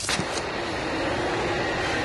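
A steady rushing drone, the ambient hum of a spacecraft in a sci-fi sound effect. It follows a brief sharper burst in the first half-second.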